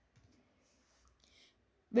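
Near silence in a pause between spoken sentences, with a few faint soft clicks and a brief faint hiss about a second in; a voice starts speaking at the very end.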